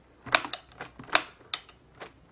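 A few sharp plastic clicks and taps as a small plastic flag is pushed into place in a plastic toy display case.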